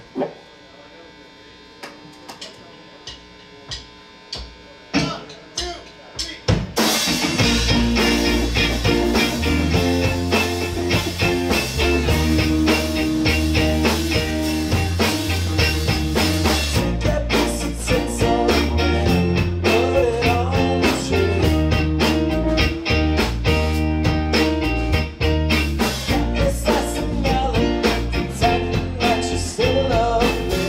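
A live rock band starting a song. For about six seconds there are only a few scattered sharp taps over a quiet stage, then the full band comes in with electric guitars, bass and drums.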